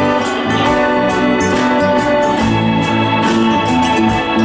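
Live roots-country band playing: sustained organ-like keyboard chords over drums with a steady beat, bass and acoustic guitars.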